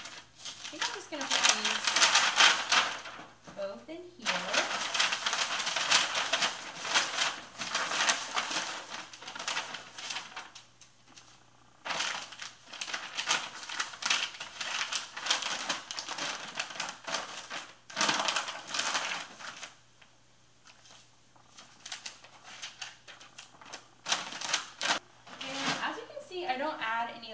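Plastic poly mailer crinkling and rustling as a garment is pushed into it and the bag is folded over, in crackly bursts of several seconds with short pauses between.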